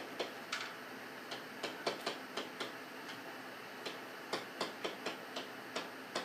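Pen strokes of handwriting on a writing surface: irregular light taps and short scratches, about two or three a second, as letters are written.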